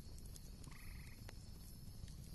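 Faint background ambience with a short, rapid trill from a small animal about three-quarters of a second in.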